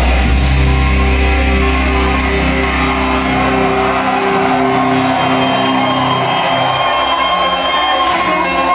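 Heavy metal band playing live, heard through the PA in a large hall. The deep bass is heavy at first and drops out about halfway through, leaving sustained notes higher up.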